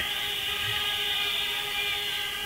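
A steady electronic drone of several held tones over a hiss, unchanging, from the sound system in the gap between the MC's lines.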